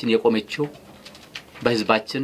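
A man speaking into microphones in short phrases, with a pause of about a second in the middle.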